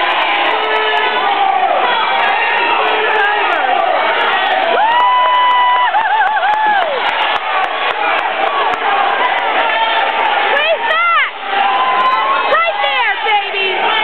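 Crowd of spectators shouting and cheering, many voices overlapping, with one long drawn-out yell about five seconds in and sharp rising-and-falling whoops near the end.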